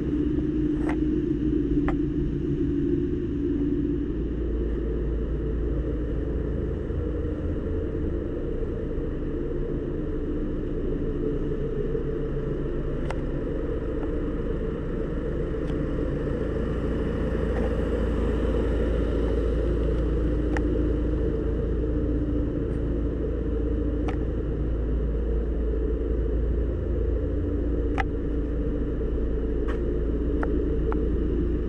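Audi A5's 2.0-litre four-cylinder engine idling steadily, a low rumble, with a few faint clicks.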